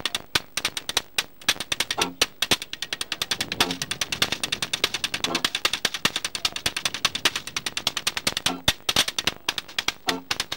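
Washboard solo: a corrugated metal washboard struck and scraped with metal-tipped fingers, giving a fast, steady rhythm of sharp clicks, about eight a second.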